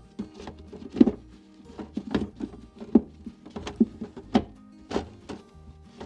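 Wooden beehive frames knocking and clacking against each other and the wooden box as they are put back into a swarm trap, a dozen or so irregular knocks. Background music plays underneath.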